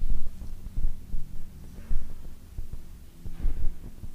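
Low, irregular thumping with a steady hum underneath; no speech or music.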